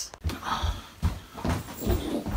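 Footsteps and hand-held phone handling noise: low thuds about twice a second with some rustling between them.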